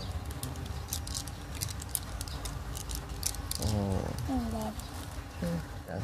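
Light, irregular crackling clicks of paper snack wrappers being handled as children eat, over a low steady hum, with a short spoken 'ừ' midway.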